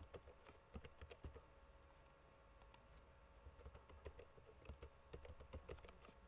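Faint typing on a computer keyboard: two short runs of keystrokes, one in the first second or so and another from about three and a half seconds in until near the end.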